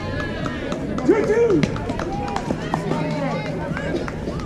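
Several voices shouting and cheering at once during a softball play, with one loud drawn-out yell about a second in.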